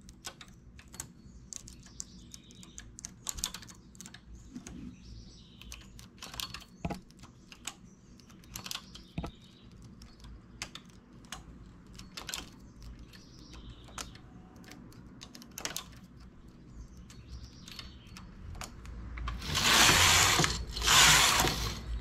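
Light metallic clicks of a hand transfer tool lifting stitches on and off the latch needles of a domestic knitting machine's needle bed. Near the end come two loud sweeps, the knitting carriage run across the bed, knitting two rows.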